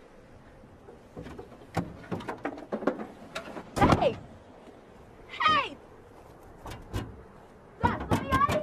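A run of sharp clicks and knocks, broken by two short high-pitched cries, the first falling in pitch about four seconds in and the second about five and a half seconds in.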